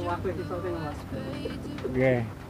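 A dove cooing, with low voices in the background.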